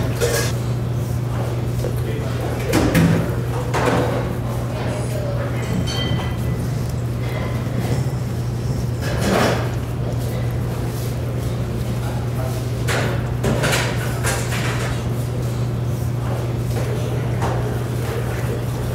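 Batter being stirred with a wooden spoon in a stainless steel mixing bowl: a few scattered knocks and clinks of spoon and bowl over a steady low hum.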